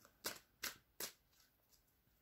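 Tarot cards handled in a shuffle: three sharp card snaps about 0.4 s apart in the first second.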